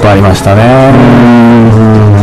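A man's voice talking, which ends in a long drawn-out vocal sound held at one steady pitch through the second half.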